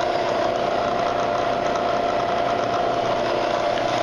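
Bridgeport Series I vertical mill's 2 HP spindle motor and drive running steadily, the spindle turning forward in the low range at about 120 rpm: a steady hum with a mid-pitched whine.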